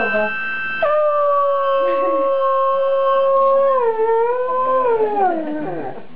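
Afghan hound howling along to a harmonica. A held harmonica chord sounds first. About a second in the howl starts on one long steady note, drops lower about four seconds in, then slides down near the end.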